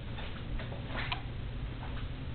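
Soft, irregular taps and clicks from walking with a handheld camera, about half a dozen in two seconds, over a steady low hum.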